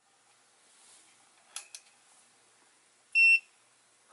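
Wanptek EPS1602 bench switching power supply powering up: two quick clicks of its power switch, then about three seconds in a single short, steady electronic beep from its buzzer as the display lights. This is the sign that the supply, freshly repaired, starts again.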